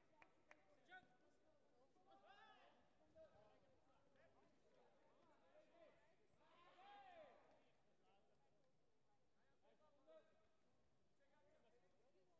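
Near silence: faint voices carrying in a large sports hall, with a few faint knocks in the first second.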